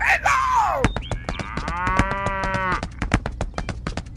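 A cow mooing, dubbed in as a sound effect: a short falling call at the start, then one long moo. Under both runs a steady clip-clop of hoofbeats, about eight a second.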